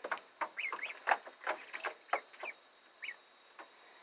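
Ducklings peeping: a scatter of short chirps mixed with small clicks, busiest in the first two and a half seconds, then only one or two more.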